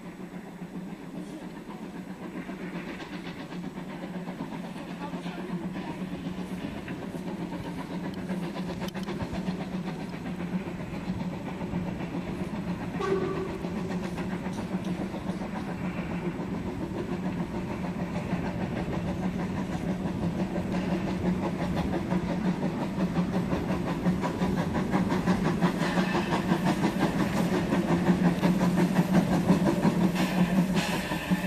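Narrow-gauge steam locomotive working steadily as it pushes a snowplough through deep snow, growing gradually louder as it draws nearer.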